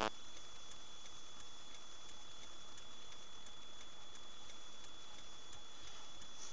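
Steady low hiss of a vehicle cabin, with a thin, constant high-pitched whine and a few faint ticks.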